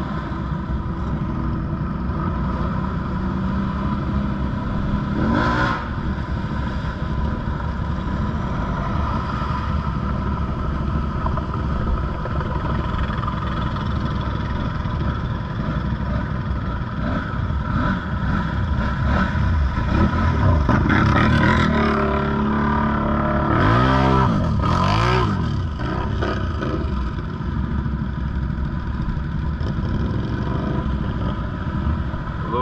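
ATV engines running as the quads wade through deep muddy water, with a run of revs rising and falling about two-thirds of the way through.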